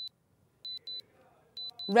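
Electronic countdown-timer sound effect: short, high, identical beeps in pairs, about one pair a second, counting down to a price drop.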